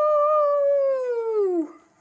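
A boy's long drawn-out "woooo" cry, like a howl: it rises in pitch at the start, holds, then slides down and stops shortly before the end.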